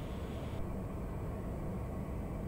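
Steady drone of the Piper Meridian's Pratt & Whitney PT6A turboprop engine and propeller, heard in the cockpit at approach power on short final.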